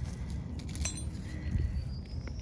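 A small metal bracket set down by hand among rocks and dry leaf litter, with a light metallic clink about a second in, over a low steady rumble.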